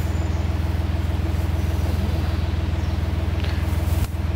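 Narrowboat diesel engine ticking over in neutral, a steady low pulsing drone that holds an even level throughout.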